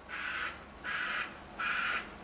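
A bird's harsh calls, three in a row about three-quarters of a second apart.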